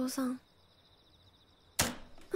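Film soundtrack: a girl's soft voice saying "Otō…", then a near-silent pause with a faint high buzz, broken near the end by a single sudden sharp crack.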